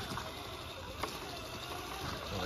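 A scale RC rock crawler driving slowly over dirt, with its electric motor and gears whining softly under the noise of the tyres. There is one sharp knock about halfway through.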